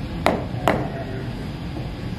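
Two sharp percussive hits about half a second apart, each followed by a brief echo in the hall.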